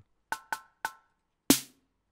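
Synthesized drum pads in Reason's Kong Drum Designer struck one at a time. First come three short electronic hi-hat ticks with a brief metallic ring. Then, about one and a half seconds in, a single louder synth snare hit.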